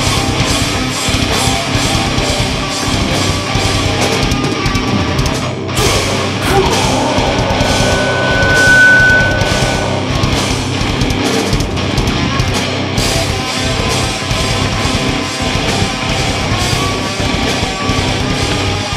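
Live heavy rock band playing loud: distorted electric guitars, bass guitar and drums. The music drops out for a split second about five and a half seconds in, and a high steady tone is held for about two seconds near the middle.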